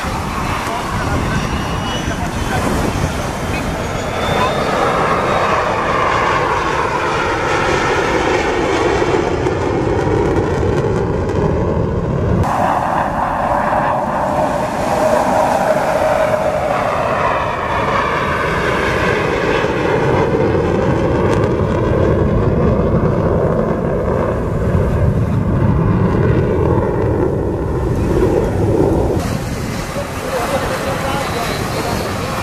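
A single Aermacchi MB-339 jet trainer of the Frecce Tricolori flying past. Its Rolls-Royce Viper turbojet makes a loud, steady rushing noise whose tone sweeps slowly up and down. The sound changes abruptly about twelve seconds in.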